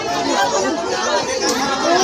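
A crowd of many people chattering and calling out over one another as they scramble for coins and treats tossed into it.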